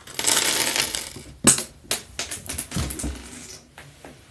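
Handling of a plastic blister pack and small hard plastic toy weapon and helmet pieces. First a rustle of packaging, then a sharp click about one and a half seconds in, followed by a run of light clicks and clinks.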